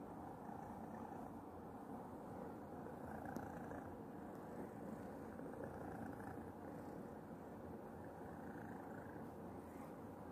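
Domestic cat purring steadily while being stroked, close to the microphone.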